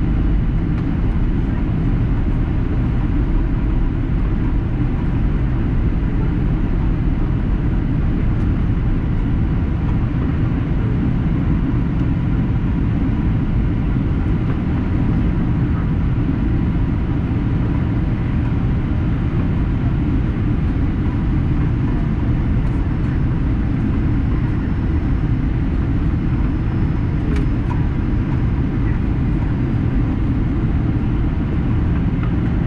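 Steady low cabin noise inside a Boeing 737-800 in descent, heard at a window seat: the CFM56 turbofan engines and the airflow over the fuselage, even throughout.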